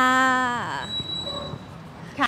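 A woman's voice drawing out the final 'kha' of a Thai greeting for under a second, falling in pitch at the end, followed by low outdoor background with a faint, steady high whine.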